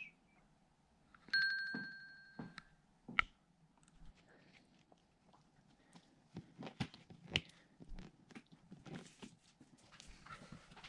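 Smartwatch timer alarm sounding as a pulsing two-tone beep for about a second, marking the end of a four-minute countdown. Then a sharp click and, from the middle on, a run of small plastic clicks and taps as a windshield repair kit's suction-cup bridge is handled on the glass.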